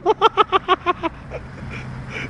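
Quick laughter for about the first second, then a small hatchback's engine running steadily with a low hum that swells slightly near the end. The clutch has just burned out and the car is smoking.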